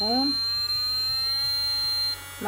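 JMD-207 electric nail drill handpiece running with a steady high whine over a low hum, its pitch creeping slowly upward.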